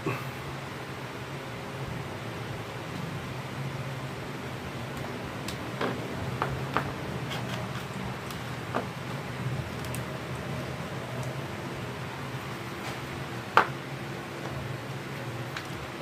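Light clicks and rustling of wires and a power-cord connector being handled inside an opened rice cooker, over a steady background hum. There are a few scattered clicks, and one sharper click a little before the end.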